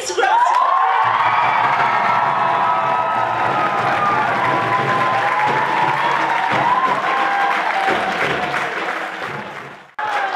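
Hall audience applauding and cheering, with long held tones of music underneath. The sound fades out just before the end.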